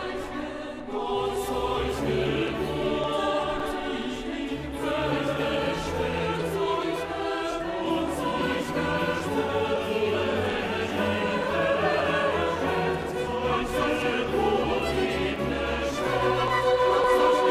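Mixed choir of men's and women's voices singing a Christmas choral piece in sustained, layered chords over a low bass line, growing slightly louder toward the end.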